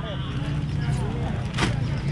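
A steady low mechanical hum, like a running engine, under faint voices, with one sharp click about one and a half seconds in.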